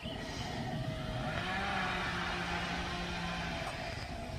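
A motor vehicle's engine or motor hum, rising in pitch about a second in and then holding steady, over outdoor background noise.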